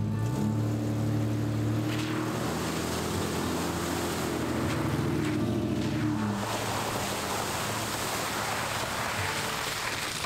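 Off-road SUVs driving through a muddy puddle on a dirt trail: engines running and water splashing up from the tyres, with a louder stretch of sloshing through mud in the second half. Background music plays underneath.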